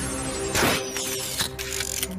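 Mechanical sound effects of hatches opening in the ground and a device rising up: a rush of noise about half a second in, then a run of ratcheting clicks and short whirs, over sustained background music.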